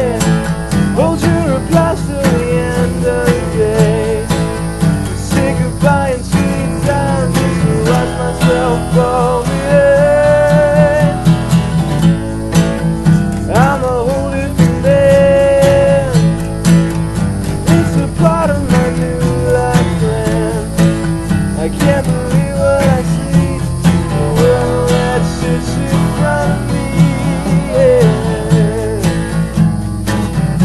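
An acoustic band playing a song: steel-string acoustic guitars strummed over a four-string acoustic bass guitar, with a held, wavering melody line above.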